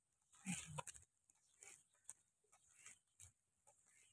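Near silence with a few faint, short, scattered sounds, the most noticeable a brief one about half a second in.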